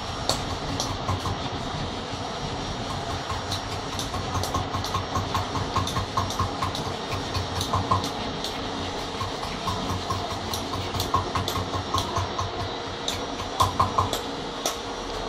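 A hand tool working a white stone statue, making quick light clicks and taps a few times a second over a steady mechanical hum.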